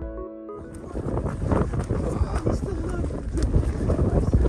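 Soft background music with sustained keyboard notes cuts off about half a second in. Wind then buffets the microphone, a loud gusting rumble with scattered sharp clicks.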